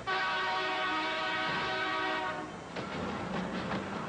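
A bus horn blares in one long steady blast of about two seconds, starting abruptly, then cuts off. A few short knocks follow.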